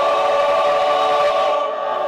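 Men's chorus singing, holding one sustained chord.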